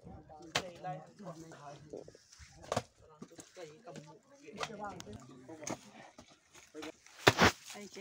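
People talking while a hoe digs into wet mud, with a few sharp knocks of the blade striking and a louder double knock near the end.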